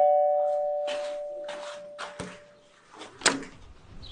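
A two-note chime, a higher note then a lower one, ringing on and slowly fading over about two seconds, followed by a few faint knocks and a short sharp click about three seconds in.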